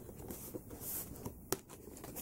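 Cardboard-and-plastic action-figure window box being handled and unfolded: faint rustling and scraping with one sharp click about one and a half seconds in.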